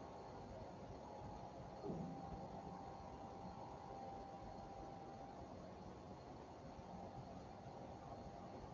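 Quiet room tone: a steady faint hiss with a faint hum, and one brief, soft, low sound about two seconds in.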